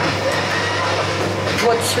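A sliding wardrobe door rolling open along its track for about a second and a half, with a steady low hum underneath.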